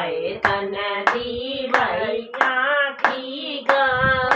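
Women singing a Hindi devotional bhajan unaccompanied, keeping time with steady hand claps about every two-thirds of a second.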